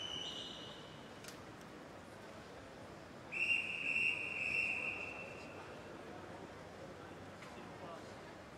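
Two blasts on a swimming referee's whistle, each a single steady pitch: a short blast at the start and a louder one of about two and a half seconds a little past three seconds in. Low crowd murmur of an indoor pool hall runs underneath.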